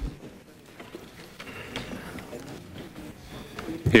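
Hearing-room background: a faint murmur of voices with scattered small clicks and rustles, and a man's voice starting right at the end.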